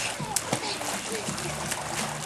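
Swimming-pool water splashing as a small child paddles with her arms: a run of irregular small splashes.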